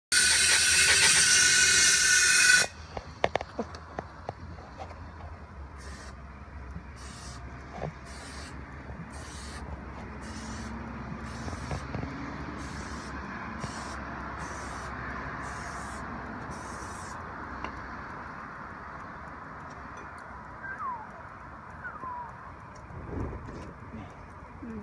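Aerosol spray can hissing in more than a dozen short bursts, a little over one a second, as it is sprayed onto a trailer tire. A loud rushing noise fills the first two and a half seconds.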